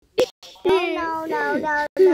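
A short sharp pop, then a child's high voice drawn out on a steady, sung-like pitch for over a second.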